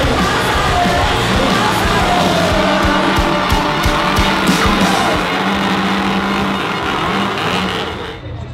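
Background music over a loud crowd, with fans' chainsaws being revved up and down, an engine whine that rises and falls.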